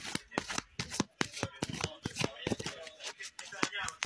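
A deck of tarot cards being shuffled by hand: a quick, uneven run of sharp papery slaps, about five a second.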